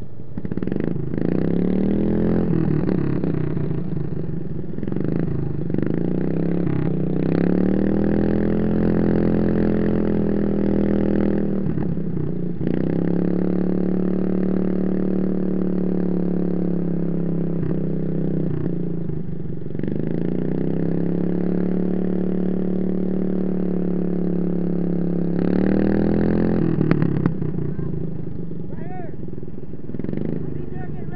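Racing riding lawn mower's engine heard from on board, revving up and holding high revs about five times, each run rising in pitch and then dropping off briefly before the next.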